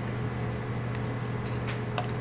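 Steady low hum over even background noise, with a couple of faint soft clicks near the end.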